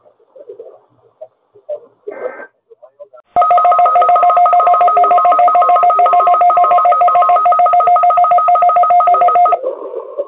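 Weather alert radio receivers sounding their alarm for a weekly weather radio test: a loud, rapidly pulsing two-tone electronic beep starts abruptly about three and a half seconds in and cuts off near the end.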